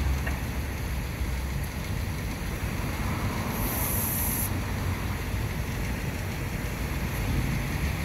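Air hissing at a car tyre's valve for about a second, around the middle, over a steady low rumble of background noise.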